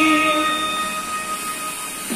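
The close of a sung pop ballad: a man's held final note, wavering with vibrato, fades out about half a second in. The backing music's last sustained note keeps going a little longer and dies away, leaving a light hiss.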